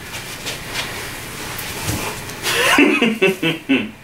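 Soft rustling and movement, then about two and a half seconds in a man breaks into laughter in several short, loud breaths.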